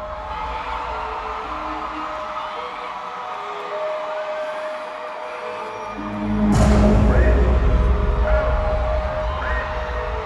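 Live concert music over an arena sound system, recorded from the stands on a phone. It opens with a quieter passage of held tones; about six seconds in, heavy bass comes in and the music gets louder, with a sharp hit across the whole sound.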